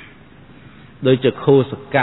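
Speech only: a man preaching. After about a second of low background hiss he speaks one short phrase.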